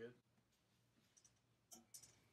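Near silence: room tone, with the end of a spoken word at the very start and a faint short click-like sound near the end.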